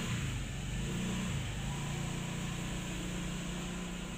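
A low, steady motor hum.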